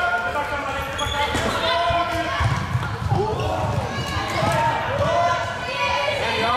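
Floorball play in a large sports hall: players calling out to each other, sharp clacks of sticks and ball, and shoes squeaking on the court floor.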